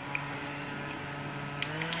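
Small rechargeable handheld fan running close to the microphone: a steady electric motor hum with a whirr from its blades. Its pitch rises slightly near the end as the fan picks up speed.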